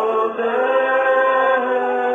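A man singing long held notes to his acoustic guitar, sliding between pitches just after the start and again near the end. The sound is muffled and dull, with little top end.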